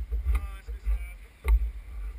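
Two sharp knocks on the stationary race car's body as the driver climbs out, over a low rumble of wind on the car-mounted camera's microphone, with faint voices.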